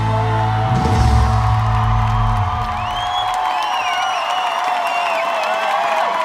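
A live pop band holds its final chord with heavy bass, which cuts off about two and a half seconds in. The audience screams and whoops, with many high gliding voices over a crowd roar.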